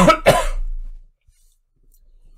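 A person coughing: two coughs in quick succession at the start, the second trailing off within about a second.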